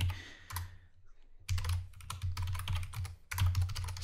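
Typing on a computer keyboard: a lone keystroke, a short pause, then a quick run of keystrokes from about a second and a half in.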